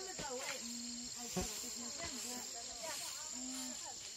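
Steady high-pitched buzz of field insects, with faint distant voices of people talking and a couple of short knocks.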